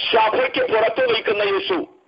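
Speech only: a man preaching, heard over a telephone line with a narrow, phone-like sound, pausing near the end.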